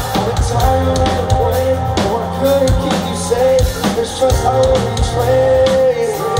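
Rock band playing: a sung lead vocal holding long notes over a drum kit and electric guitars, with a heavy low end.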